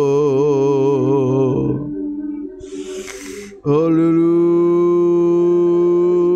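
A man's voice singing long, drawn-out worship notes: a wavering held note fades out about a second and a half in, a breath is drawn, and a steady held note starts just before the four-second mark.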